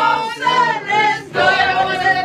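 A group of children singing a Dutch Sinterklaas song together, loud and unaccompanied.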